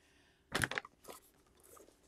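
Cardboard box of sublimation paper being handled and shifted on a desk: a brief rustling scrape about half a second in, then a couple of fainter ones.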